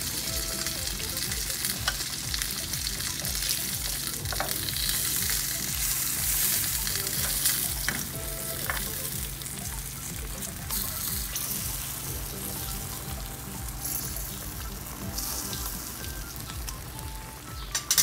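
Fried maya-maya (red snapper) pieces sizzling in a pan of egg-and-tomato sarciado sauce over a low fire: a steady, crackling sizzle.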